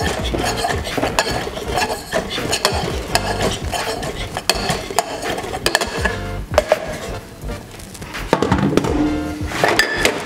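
A muddler repeatedly knocking and grinding fresh rosemary in the bottom of a metal cocktail shaker tin to release its flavour. The knocks come in quick succession and thin out after about seven seconds, with background music underneath.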